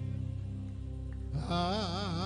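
Slow worship music: sustained keyboard chords, with a singer coming in about one and a half seconds in on a long held note with a wide vibrato.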